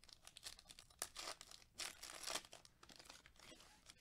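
Foil trading-card pack wrapper being torn open and crinkled in the hands, a faint run of irregular crackles that is busiest in the middle.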